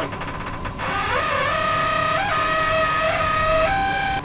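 Music laid over the footage: held notes that step up in pitch, over a steady low rumble.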